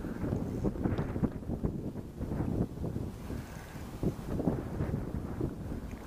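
Wind buffeting the microphone, an uneven low rumble that flutters throughout.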